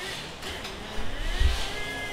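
Car assembly-line machinery over a steady factory din, with a whine that rises and falls in pitch in the second half and a heavy low thump about one and a half seconds in.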